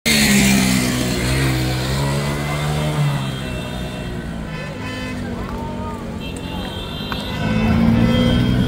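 Motor vehicle engines running steadily, with a rushing hiss in the first second and voices in the background.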